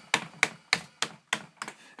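The hi-hat pedal of an Alesis DM10 electronic drum kit being pressed over and over, giving short sharp ticks about three times a second.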